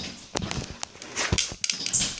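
Handling noise from a handheld phone camera being moved about: a few short, scattered knocks and rustles close to the microphone.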